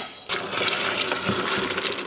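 A bar of laundry soap being grated over a metal grater on a steel pot: a steady, rough scraping that starts about a third of a second in, while the soap is shredded for homemade laundry soap.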